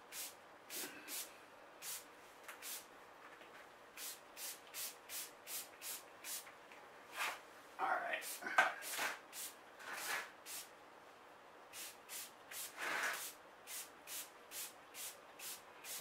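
Small fine-mist pump spray bottle squirted over and over, each pump a short hiss, coming at about one to two a second. There are a few louder rustles of leaves or handling about halfway through and again later.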